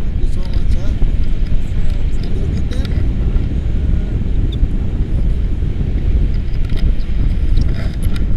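Wind buffeting a camera microphone during a tandem paraglider flight: a loud, steady low rumble.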